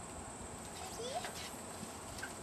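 Quiet outdoor background with one short, faint rising vocal sound about a second in.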